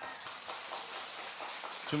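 A large congregation applauding, the steady clatter of many hands clapping.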